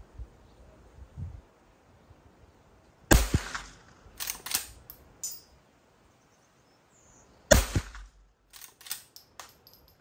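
Two sharp shots from a Henry H001 .22 rimfire lever-action rifle, about four and a half seconds apart. About a second after each shot comes a short run of lighter metallic clicks as the lever is worked to chamber the next round.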